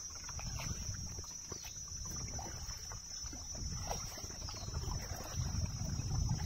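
Kayak paddling: soft paddle dips and water trickling off the blade, quiet and unhurried, under a steady high-pitched insect drone.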